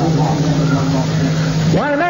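A crowd of listeners' voices over a steady low held tone. Near the end this breaks off and a single man's voice rises into a sustained, melodic line of Quran recitation.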